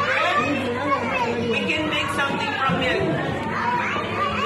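Many voices talking over one another: a roomful of young children chattering.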